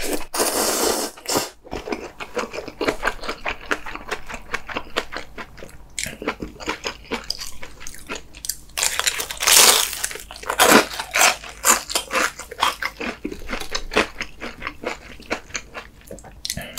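Close-miked eating sounds: a slurp of ramen noodles at the start, then steady chewing. About nine seconds in comes a loud bite into a battered, deep-fried chili pepper, followed by crisp crunching chews.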